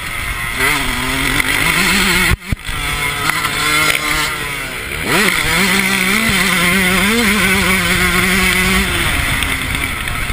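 Yamaha YZ125 two-stroke motocross engine under riding load on a dirt track, heard from the bike itself: the revs waver, the sound dips briefly a couple of seconds in, then rises sharply about halfway through, holds steady and eases off near the end.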